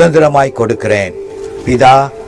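A man's voice over a sound system, with long drawn-out pitched syllables.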